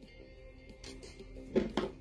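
Soft background music, with a brief handling noise about one and a half seconds in.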